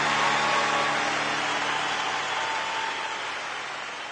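Concert hall audience applauding at the end of a song, the band's last note dying away in the first second or so. The applause fades out gradually.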